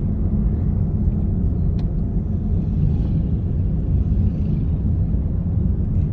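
Steady low rumble of a moving car heard from inside the cabin: engine and road noise while driving, with one faint click about two seconds in.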